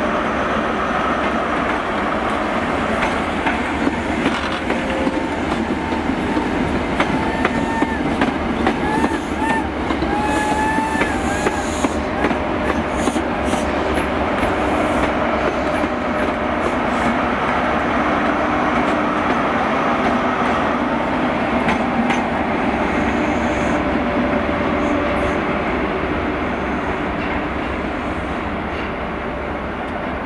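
A GWR High Speed Train with Class 43 diesel power car 43004 passing, its engine running and its wheels rumbling over the rails. Wavering wheel squeals come between about seven and twelve seconds in, with clicks of wheels over rail joints, and the sound eases a little near the end.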